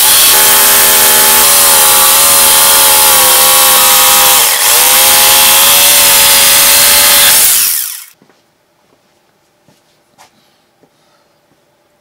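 Corded Ryobi jigsaw cutting through plywood, running steadily at full speed with a brief dip about halfway, then stopping abruptly about two-thirds of the way in. A few faint clicks follow.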